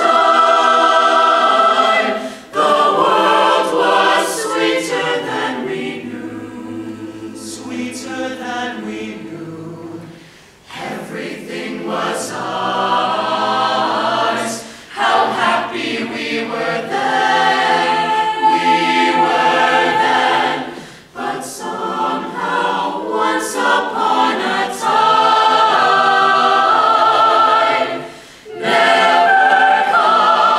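Mixed choir of men's and women's voices singing in harmony, in sung phrases with short breaks between them and a softer passage about six to ten seconds in.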